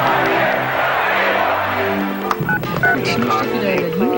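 Commercial soundtrack: music under a noisy wash of many voices for about two seconds, then a quick run of short telephone keypad beeps and clicks.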